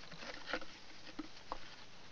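A few faint, light knocks and scrapes of someone rummaging under a wooden wagon bed, getting at the wagon's axle-grease bucket.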